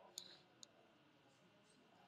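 Near silence: room tone with two faint, short clicks near the start, under half a second apart.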